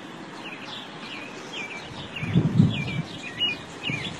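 Small birds chirping in a rapid series of short calls. About two seconds in, a louder low, muffled rumble lasts under a second.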